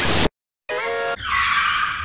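A burst of music cut off abruptly, then a screeching tire-skid sound effect: a steady high squeal turning into a hissing skid that fades away, used as a comic "stop".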